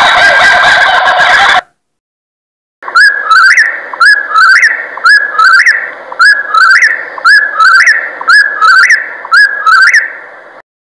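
A kookaburra's laughing call that cuts off about a second and a half in. After a short silence, a whip-poor-will sings its three-note 'whip-poor-will' phrase over and over, a little faster than once a second, each phrase ending on a sharply rising note.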